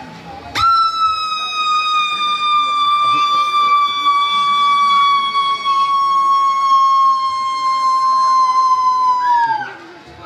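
A single high-pitched note held for about nine seconds, voiced for a puppet creature's big finale. It starts suddenly, sags slowly in pitch, and falls off sharply at the end.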